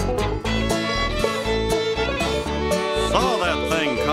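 Bluegrass hoedown band music: fiddle, acoustic guitar and bass over a steady beat, the fiddle sliding between notes near the end.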